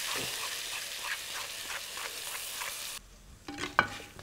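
Spices frying in hot oil in a pot, sizzling steadily, with light scrapes of a wooden spoon stirring them. The sizzle cuts off suddenly about three seconds in, leaving a few soft clicks.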